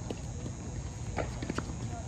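Tennis ball being struck by racquets and bouncing on a hard court during a doubles rally: several light, sharp knocks at uneven intervals.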